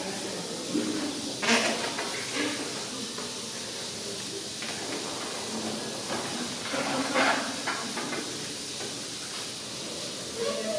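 Male Aldabra giant tortoise moaning while mating: a few breathy, hissing moans, the strongest about a second and a half in and again around seven seconds.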